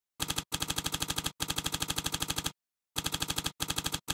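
Typewriter sound effect: rapid, even key strikes at about twelve a second, in several runs broken by short pauses.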